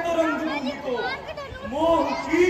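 A loud, drawn-out voice declaiming stage dialogue, with long gliding, rising and falling tones.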